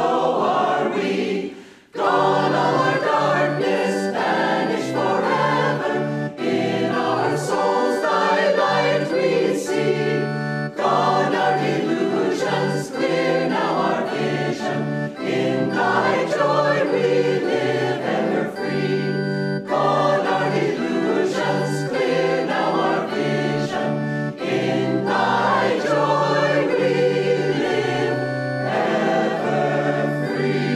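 Mixed choir of men and women singing a hymn in sustained chords, with a short break about a second and a half in before the singing resumes.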